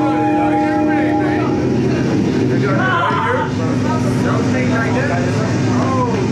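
Live ambient electronic music: a held synthesizer chord that stops about a second and a half in, over a low rumbling drone. Gliding, warbling voice-like sounds drift over it, and a steady low tone comes in midway.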